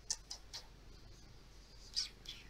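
Domestic cat purring faintly and steadily, with a few short sharp ticks in the first half-second and one more near the end.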